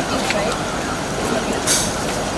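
Indistinct voices over steady street noise, with a brief hiss near the end.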